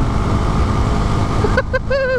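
Husqvarna Svartpilen 401's single-cylinder engine running at road speed under a steady rush of wind on the camera microphone. The rider starts laughing near the end.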